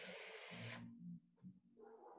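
A woman saying the phonics /f/ sound, a single breathy 'fff' hiss lasting under a second at the start, over a faint low hum.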